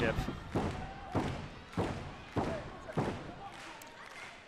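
Arena crowd clapping together in a steady rhythm, about one clap every 0.6 seconds and fading slightly, with short shouts between the claps.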